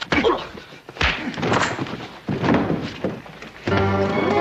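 A series of heavy thuds and knocks with brief vocal sounds between them. Near the end an orchestral music cue comes in suddenly with a sustained chord.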